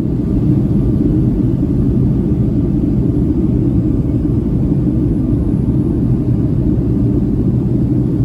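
Steady low rumble of a Boeing 757-300's engines and rushing air heard inside the cabin from a seat over the wing, during the climb-out after takeoff.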